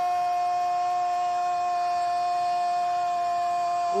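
A Brazilian TV football commentator's goal cry: one long "Gol" held on a single steady high note.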